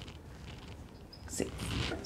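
Dry-erase marker writing digits on a whiteboard: faint squeaks and scratches, with a few short, sharper strokes in the second half.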